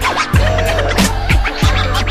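DJ scratching a vinyl record on a turntable over a hip hop beat: quick pitch sweeps up and down cut against steady drum hits.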